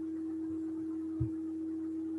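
A steady, single-pitched hum, a constant pure-sounding tone, with one soft low knock a little past a second in.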